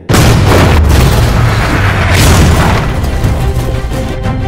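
A racing-car crash: a sudden loud boom, then a long grinding, scraping crash as the car slides and tumbles on the track throwing sparks, with a second surge about two seconds in. Film score music plays under it.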